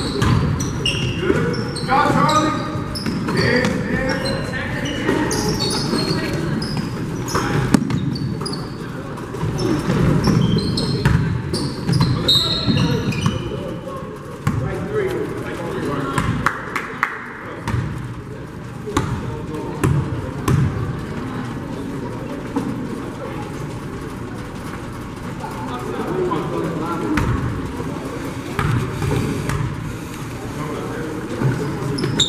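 Basketball game play on a hardwood gym floor: the ball bouncing and sneakers squeaking, with short high squeaks clustered in the first half, amid the chatter and calls of players and spectators echoing in the large gym.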